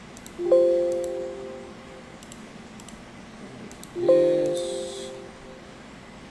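A Windows system alert chime sounds twice, about three and a half seconds apart, each note ringing out and fading over about a second, as the delete of a project folder brings up confirmation prompts. Faint mouse clicks come between the chimes.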